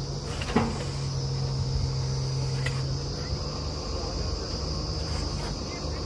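Engine of a truck-mounted borewell drilling rig running steadily, with one sharp knock about half a second in.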